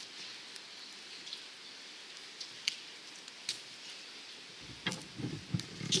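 Light rain falling, a steady hiss with scattered drops ticking; near the end, a run of low thumps and knocks.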